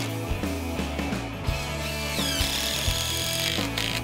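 Cordless DeWalt power driver running, sinking a 6-inch screw through the OSB skin of a structural insulated panel into the timber frame, loudest in the second half. Background music plays underneath.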